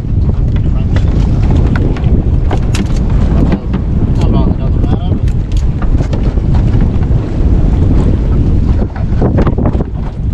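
Wind buffeting the microphone on an open boat at sea, a loud steady rumble, with scattered sharp knocks and clicks.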